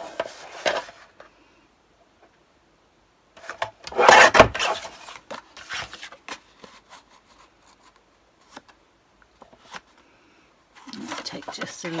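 Guillotine-style paper trimmer cutting black card stock: a brief rasp as the card slides over the trimmer base at the start, then a louder rasping stroke about a second long around four seconds in as the blade goes through the card, followed by a few light handling taps.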